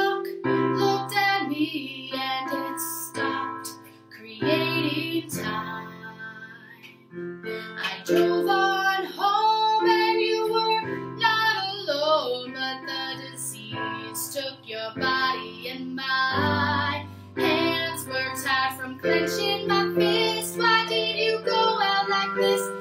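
A woman singing with her own keyboard accompaniment, sustained chords in the bass shifting every second or two under the vocal line, with a brief softer passage about five seconds in.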